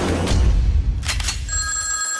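A deep low rumble with a sharp hit about a second in. Then a telephone starts ringing about one and a half seconds in, with a steady ring.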